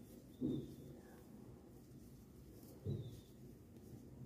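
Quiet hand-crocheting with chunky T-shirt yarn: two brief, soft, low handling sounds about half a second in and again near three seconds as the hook and yarn are worked.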